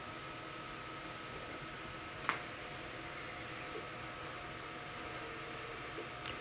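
Faint steady background hiss with a single sharp computer-mouse click about two seconds in.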